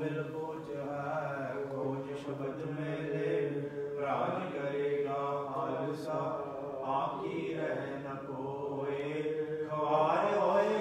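Slow Sikh devotional chanting: a voice in drawn-out, wavering sung phrases, a new phrase beginning every second or so.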